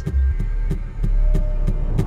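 Trailer sound design: a deep low drone under a steady pulsing beat, about three thumps a second, like a heartbeat.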